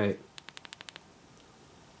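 Side switch of a Fitorch EA25 flashlight pressed rapidly several times, a quick run of about eight small clicks in half a second, to unlock it from lockout.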